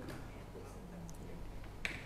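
A quiet pause in a talk: steady low electrical hum, a faint brief murmur of a voice, and a single sharp click near the end.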